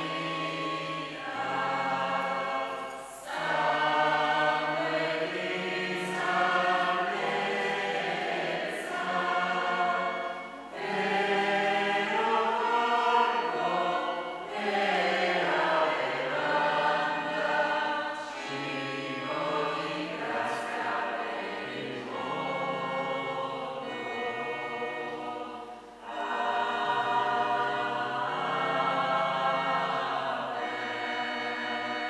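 Church choir singing an offertory hymn during the preparation of the gifts at Mass, in sung phrases with brief pauses between them.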